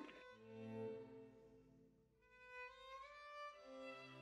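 Faint classical background music: a slow string melody of held notes that fades almost to silence around the middle, then resumes with rising notes.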